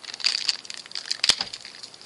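Thin plastic parts bag crinkling as it is handled, with irregular small crackles and one sharp click just past the middle.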